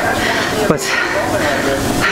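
A man speaking over a steady hiss of background noise.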